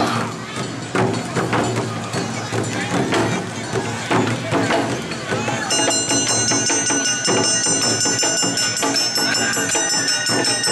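Awa Odori festival band music: drums and a small hand-struck brass gong beating a fast, steady two-beat rhythm, with a high held tone joining about halfway through.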